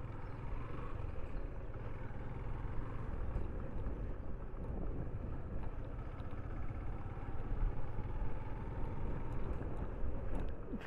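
Motorcycle running at low speed, heard as a steady low rumble.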